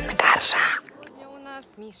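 Loud live-concert sound, music with a crowd yelling, cuts off abruptly less than a second in. It gives way to quiet talking.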